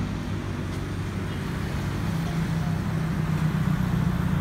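A motor vehicle's engine running steadily: a low hum over road noise that grows slightly louder over the seconds.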